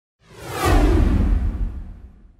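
A whoosh sound effect with a deep low rumble, sweeping down in pitch and fading away near the end, as the logos fly into the intro graphic.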